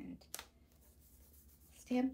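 Hands handling cardstock on a stamp: one short tap of paper, then faint rubbing of palms over the sheet.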